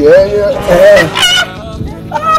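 A man's loud, drawn-out laugh with a wavering pitch, dropping away after about a second and a half.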